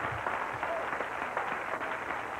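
Comedy-club audience laughing and applauding after a punchline, a dense patter of clapping mixed with laughter.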